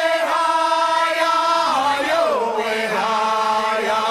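Chanting voices holding long notes, sliding down in pitch together a couple of times, with no drum underneath. Several pitches sound at once.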